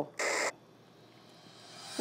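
A short burst of walkie-talkie static, about a third of a second long, as the radio transmission ends.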